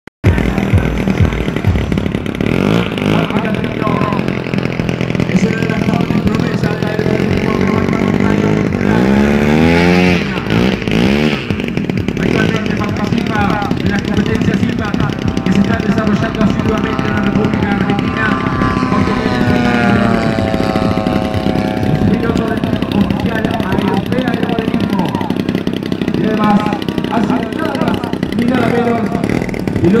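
Engine of a radio-controlled aerobatic model airplane running continuously in flight, its pitch swinging up and down as the throttle and the plane's path change, with sharp swoops about nine to eleven seconds in and a long slow bend in pitch around the middle.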